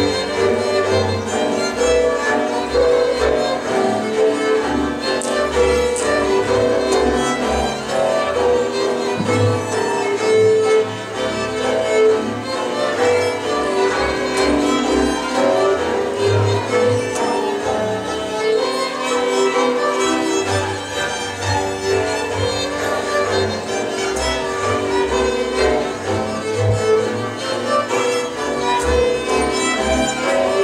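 Hungarian folk string band playing a Szilágyság tune: two fiddles carry the melody over a cimbalom struck with mallets and a bowed double bass keeping a steady pulsing beat.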